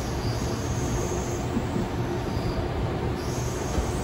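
Inside the carriage of a moving Sydney Trains electric train: a steady running rumble, with a faint high-pitched whine that comes and goes.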